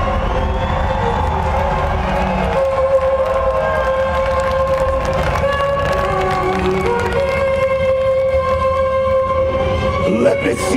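Live symphonic death metal from the audience: long, held orchestral notes that shift pitch every few seconds over a heavy low rumble.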